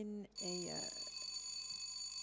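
Show-jumping arena's start signal: a steady, high-pitched electronic tone that begins shortly after the start and rings on unchanged for about three seconds, telling the next rider to begin.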